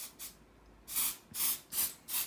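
Pump bottle of makeup primer and setting spray misting onto the face in a series of short sprays: two faint ones at the start, then three stronger ones about half a second apart from about a second in. It gives a fine, smoke-like mist.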